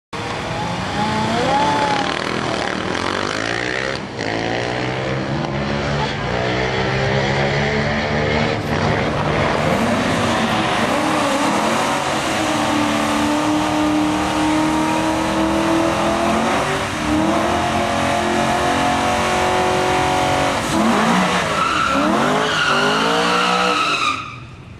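Drag-racing V8 engines revving over and over, the pitch rising and falling in repeated surges, from the Ford Falcon XR8 ute and the car beside it, with tyre squeal as the XR8 spins its rear tyres in a burnout. The sound drops away suddenly at the very end.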